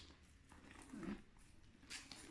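Near silence, with faint handling noise as a leather handbag with a metal chain strap is turned over: a faint short low sound about halfway through and a brief rustle near the end.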